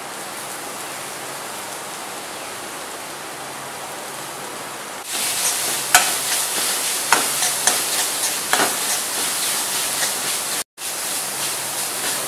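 Grated cauliflower sizzling in a steel kadai with a steady hiss. About five seconds in it gets louder as a steel spoon stirs it, scraping and clicking against the pan, with a brief cut-out near the end.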